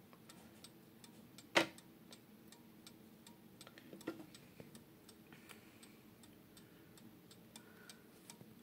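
Hampton crystal regulator mantel clock ticking faintly and evenly, with one sharper knock about a second and a half in.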